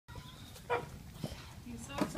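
A Chihuahua–beagle mix puppy eating wet food from a stainless steel bowl, chewing and lapping, with a brief louder sound just under a second in.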